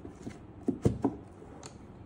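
A few light knocks and clicks from the drawer of a lacquered wooden watch winder box being handled. The loudest knock comes just under a second in, with a small sharp click later.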